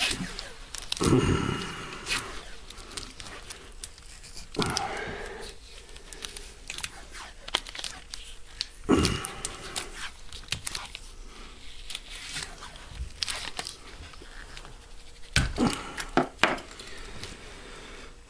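Black tape being pulled off its roll and wound tightly around a rifle stock and receiver. There are several loud peeling rips spread through, each as a length comes off the roll, with rustling and clicks of handling between them.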